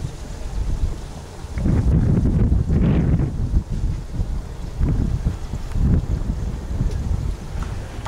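Wind buffeting the camera microphone in uneven gusts, getting much louder about one and a half seconds in.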